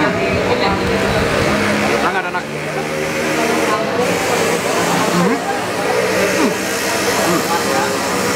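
Indistinct voices over a steady background noise: dining-room chatter with no clear words.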